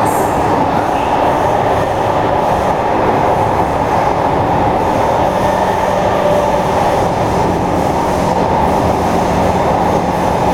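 Interior running noise of an SMRT C151 metro train travelling through a tunnel: a loud, steady roar of wheels on rail and running gear. A low hum sets in about halfway through.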